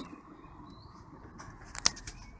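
A quick cluster of sharp plastic clicks and scrapes about a second and a half in, as a round 7.9 mm solar-panel DC plug is pushed into a portable power station's input socket.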